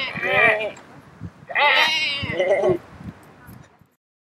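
People imitating sheep, bleating in wavering human voices: one call at the start and longer bleats around the middle, fading out near the end.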